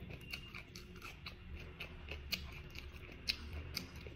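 Close-miked chewing of steamed whelk and fresh herbs: irregular crisp clicks and small crunches, with a few sharper clicks in the second half.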